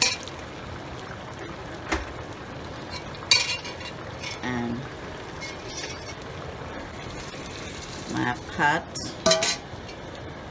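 Pieces of seasoned goat meat sizzling in a hot stainless steel pan, with a few sharp metal clinks of pot and utensils against it; the loudest clink comes about three seconds in.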